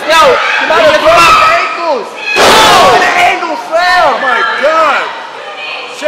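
A wrestler's body slamming onto the ring's canvas mat, one heavy slam about two and a half seconds in, amid a small crowd's shouts and yells.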